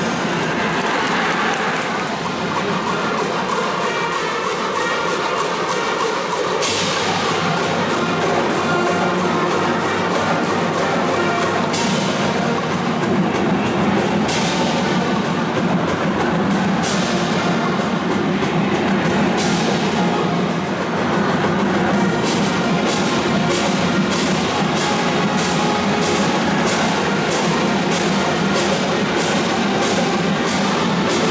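High school cheering brass band playing a baseball cheering song, with drums keeping a steady beat of about two strikes a second over the last third.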